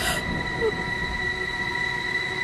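A steady, high-pitched ringing drone made of several held tones over a low rumble: a horror film score's suspense drone.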